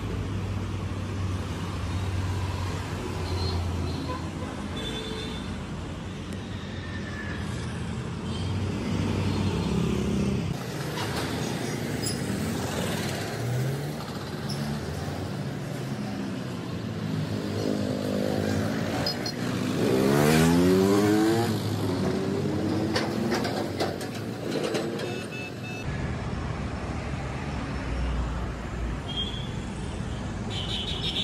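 City road traffic with cars and motorcycles passing. About two-thirds of the way through, a vehicle's engine rises in pitch as it accelerates past, the loudest moment.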